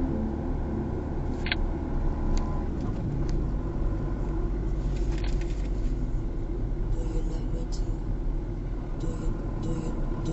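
Steady road and tyre rumble inside a car cruising on a motorway, with a few light clicks. Music dies away in the first three seconds.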